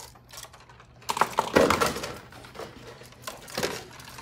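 Irregular sharp clicks and knocks of hand tools, such as pliers and wire cutters, being worked and set down on a table as wiring is done against the clock.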